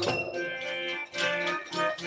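Harmonium and tabla playing a Sikh kirtan accompaniment between sung lines: held, reedy harmonium chords with a few tabla strokes.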